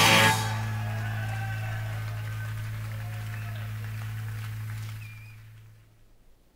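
Live post-punk rock track ending: a last loud hit, then a held low note ringing on and fading out to near silence, played from a vinyl record.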